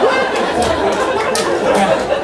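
Comedy-club audience laughing and talking over one another, with a few scattered handclaps.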